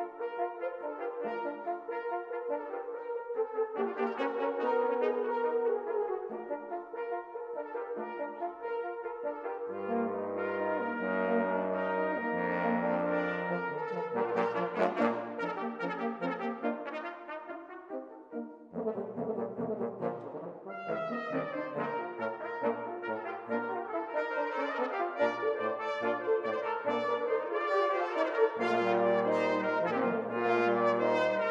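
Brass quintet of two trumpets, French horn, trombone and bass trombone playing a concert piece. Deep bass notes enter about ten seconds in, and after a brief softer passage a little past halfway the full ensemble builds again.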